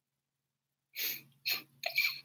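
A woman's breathy laughter: after about a second of silence, three short chuckles.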